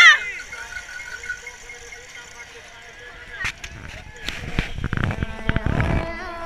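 Singing by a crowd of ski fans cuts off at the start, leaving faint crowd noise. From about four seconds in come rumbling and knocks of wind and handling on an action camera held close by.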